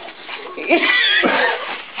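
Small white dog whining in a high, wavering voice about halfway through, an excited greeting whine.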